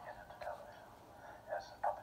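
Speech in short broken bursts, thin and confined to the middle of the range, playing from a tablet's small speaker, with a louder burst near the end.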